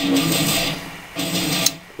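Beer pouring from a glass bottle into a glass, a steady hissing, gurgling pour that eases off in the middle and picks up again. A short click comes near the end.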